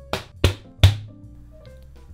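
Three sharp knocks within the first second as the top panel of a be quiet! Pure Base 500 PC case is pressed and snapped into place, over background music.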